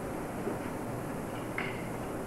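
Steady low hum and hiss of an old videotape recording's background, with a brief faint sound about one and a half seconds in.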